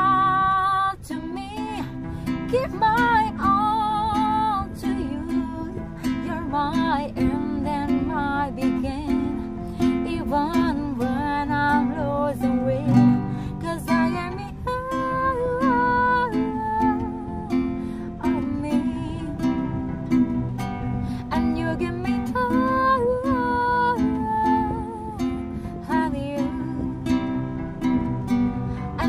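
Acoustic guitar strummed through a slow chord progression, with a woman singing a slow melody with vibrato over it.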